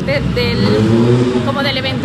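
A motor vehicle running past on a city street, a steady low rumble under a voice talking.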